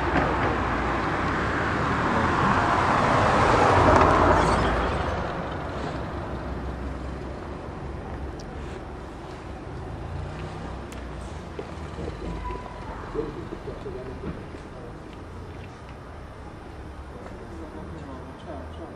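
Street traffic: a vehicle passing, swelling to its loudest about four seconds in and then fading into quieter background street noise.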